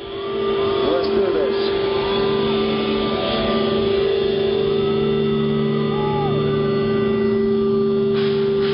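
A steady, held droning note from the stage sound system, with crowd voices shouting and calling over it in short rising-and-falling yells.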